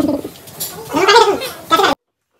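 A young child's wordless vocal sounds, a voice rising and falling in pitch with a gargly quality, cut off abruptly just before the end.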